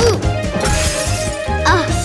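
Cartoon background music with a bass line. Over it come a short falling pitched sound, then a noisy crash-like sound effect lasting over a second, and a brief character vocalisation near the end.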